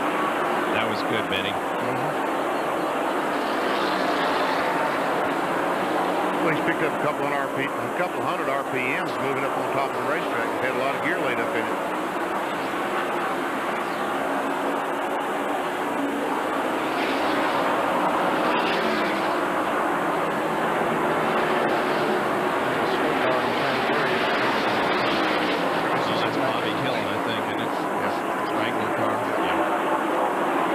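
NASCAR Winston Cup stock cars' V8 engines running at racing speed as a pack laps the track, a steady, continuous drone.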